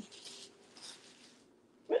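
Faint rustling of knit fabric as a wrap top is swung on and its ties handled, two soft brushes in the first second.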